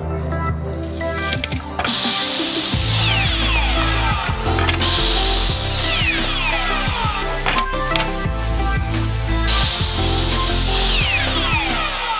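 A miter saw cutting wooden one-by-three boards, its motor whining up and then winding down with a falling whine, about three times. Background music plays over it.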